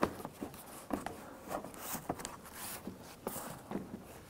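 Plastic fog light bezel and lower grille being pressed into a Toyota Camry's front bumper: scattered small plastic clicks and rubbing as the tabs seat in the bumper, with the rustle of gloved hands.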